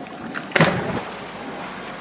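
A person jumping off a high wall lands in the water with a single loud splash about half a second in, over a steady background hiss.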